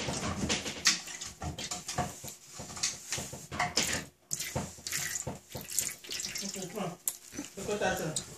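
Pet dogs making noise in the background in irregular short outbursts, with some pitched, voice-like yelps. Short liquid squirting sounds from food-colouring squeeze bottles come in between.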